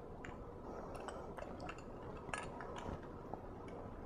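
Faint, scattered light clicks and taps of the Draco aluminum bumper halves knocking against the phone's edge as they are lined up and fitted together.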